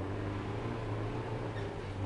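Off-road 4x4's engine running at a steady low idle, a constant low hum, as the truck creeps down a rutted dirt trail.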